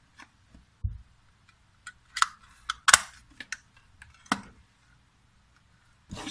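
Handling clicks and snaps from the plastic case of a small digital frequency counter as its back cover is clipped on and it is set down: a dull knock about a second in, then a run of sharp plastic clicks, the loudest near the middle.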